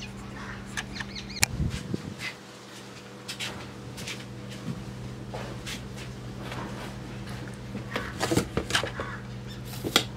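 Scattered light clicks and knocks of handling, with one sharp click about one and a half seconds in, over a steady low hum.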